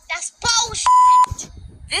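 A steady single-pitch censor bleep lasting under half a second, about a second in, cutting into short bursts of speech.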